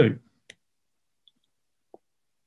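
A man's voice finishing a word, then silence broken by a faint short click about half a second in and a soft tick near the end.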